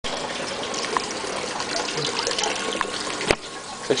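Steady rushing noise of running or falling water, cut off by a sharp click about three seconds in, after which it is much quieter. A man's voice starts right at the end.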